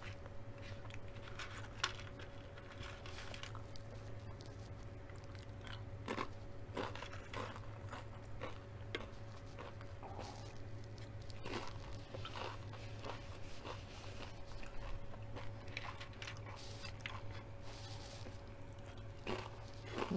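Tortilla chips being bitten and chewed close to the microphone: faint, irregular crisp crunches scattered throughout, over a steady low hum.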